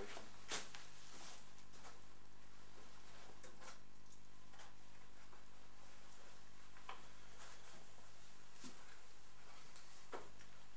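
Quiet room tone: a steady low hum and hiss with a few faint clicks and knocks, the clearest about half a second in.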